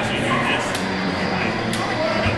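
Indistinct voices chattering in a large hall, with two faint sharp clicks about a second apart.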